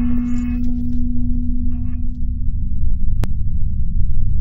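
Sound design of an animated logo intro: a deep rumble under a held low hum tone that fades out about three seconds in, with brief glassy tinkling near the start and again around two seconds in, and a single click shortly after three seconds.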